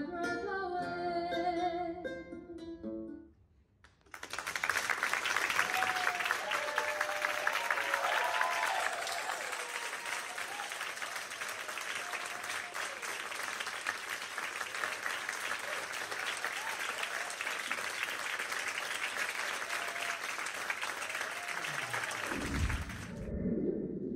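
Plucked-string music with singing ends about three seconds in; after a short pause a theatre audience applauds steadily, with a few cheers soon after the clapping starts. New music comes in near the end.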